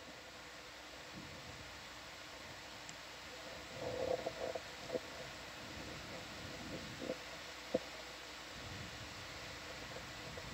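Quiet, steady background hiss and hum of the dive audio feed, with a faint murmur of voices about four seconds in and a few soft clicks after it.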